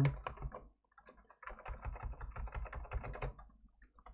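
Computer keyboard typing: a few keystrokes, a short pause about a second in, then a quick run of keystrokes that stops near the end.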